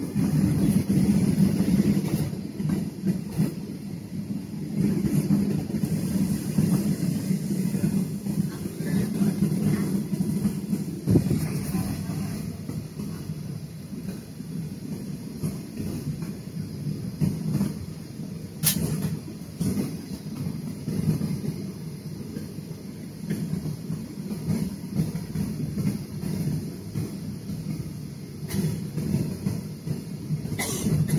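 Steady low rumble inside an airliner cabin as the jet taxis, with two sharp clicks about eleven and nineteen seconds in.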